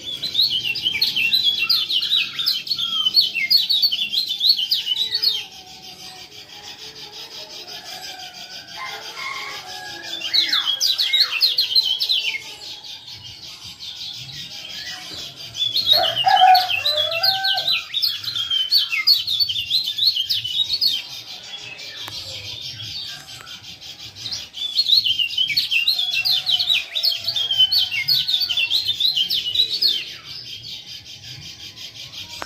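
Kecial kuning (a white-eye) giving rapid, high 'ciak ciak' chattering calls in four bursts of a few seconds each, with quieter, lower bird calls in the gaps between.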